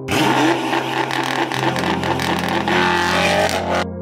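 Porsche Panamera Turbo S E-Hybrid's twin-turbo V8 accelerating hard, its engine note rising, then cutting off suddenly near the end.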